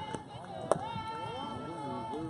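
A single sharp smack of a softball about two-thirds of a second in, over spectators calling out and cheering.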